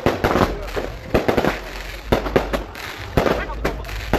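Fireworks going off in quick, irregular succession: a string of sharp bangs and crackles, several a second.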